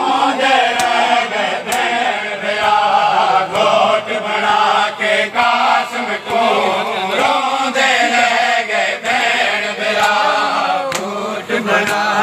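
A crowd of men chanting a noha, a Muharram lament, in unison. Sharp slaps of hands striking chests (matam) come through the singing now and then.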